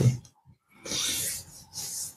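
Two short bursts of hands rubbing together, the first about half a second long and the second briefer, near the end.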